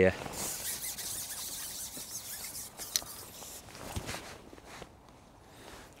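A fishing pole being shipped back: a sliding hiss for about three seconds, a sharp click near the end of it, and a soft knock about a second later.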